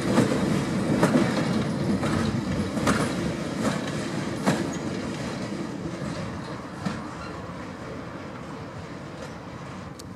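Wagons of a Class 66–hauled engineering train rolling past on jointed track, wheels clicking over the rail joints about once a second over a low rumble. The sound fades steadily as the train moves away, with a single knock near the end.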